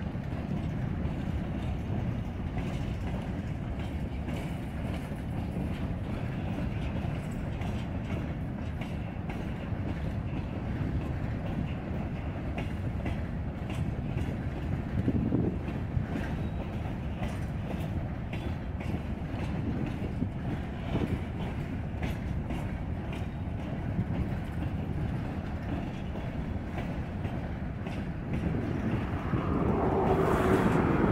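Norfolk Southern freight train's covered hopper cars rolling past: a steady rumble of wheels on rail with faint scattered clicks, growing louder near the end.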